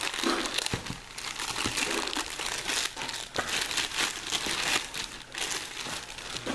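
Clear plastic bag crinkling without a break as nitrile-gloved hands pull a rifle scope out of it, in a run of quick, irregular crackles.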